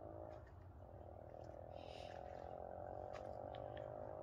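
Faint, steady low buzzing drone with a few faint high ticks above it.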